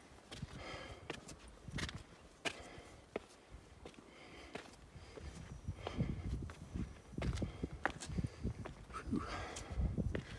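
Footsteps on cut stone steps of a pumice-rock trail, as irregular scuffs and knocks, with the climber's heavy breathing in short puffs about once a second. The knocks grow heavier in the second half.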